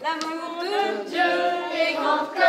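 A group of children and adults singing a song together, in long held notes.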